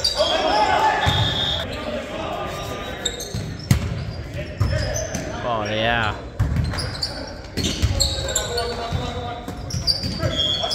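Indoor volleyball rally in a reverberant gym: sharp smacks of the ball being hit, sneakers squeaking briefly on the hardwood floor, and players calling out.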